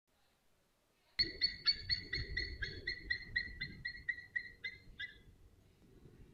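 After a click about a second in, a bird calls a run of about fifteen clear, evenly spaced notes, roughly four a second, fading and slowing slightly over some four seconds. A low rumble of background noise runs under it.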